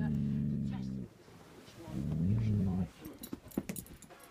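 Collie-cross dog growling low at a deer: a long growl that ends about a second in, then a second, shorter growl about two seconds in. A few handling knocks follow near the end.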